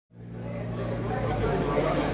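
Low steady hum from a rock band's stage amplifiers and a murmur of voices in the room, growing louder as the sound fades in just before the band starts playing.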